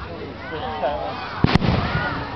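A single sharp bang from an aerial firework shell bursting, about one and a half seconds in, followed by a short low rumble.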